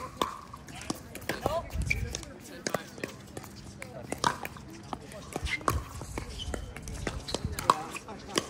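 Sharp pops of pickleball paddles striking the plastic ball, about ten hits spaced irregularly, the loudest near the end.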